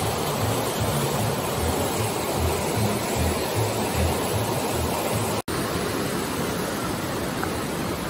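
Fast glacial mountain river rushing over rocks in rapids: a steady, loud rush of white water, broken once by a brief dropout about five and a half seconds in.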